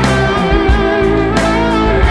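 Instrumental section of a rock song: electric guitar holding sustained, wavering notes over bass and a steady drum beat.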